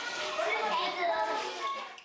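A group of Japanese schoolchildren chattering and calling out over one another, many voices at once, fading out at the very end.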